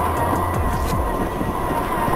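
Music playing over a steady whine from an RC crawler's Sequre 1800kv brushless motor and drivetrain, pitch wavering slightly as it drives.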